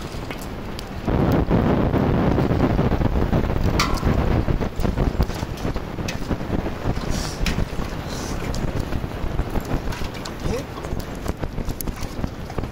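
Wind buffeting the microphone, louder from about a second in, with irregular taps and rustles of live fish flapping in a cast net on the grass.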